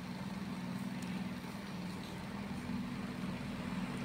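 A steady low background hum with faint hiss, unchanging throughout.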